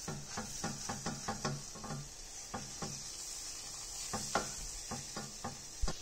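Wooden spoon stirring a butter-and-flour roux in a stainless steel saucepan, making repeated short scrapes against the pan, about three a second, over a faint steady sizzle, with a louder knock near the end.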